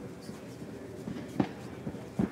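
Low arena background noise during an MMA bout, with one short, sharp sound about one and a half seconds in and a fainter one just before the end.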